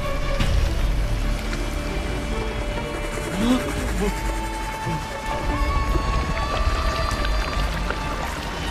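Tense film score: long held high tones that shift in pitch over a deep, steady low rumble.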